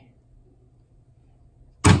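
A hammer blow on a steel center punch, tapping an aluminium lead plug back into a diesel injector rocker arm: a single sharp metallic strike near the end, after a quiet stretch of low hum.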